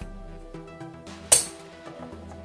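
Background music with a steady beat, and one sharp snap a little past halfway as a mains plug is pushed into a socket of the power strip.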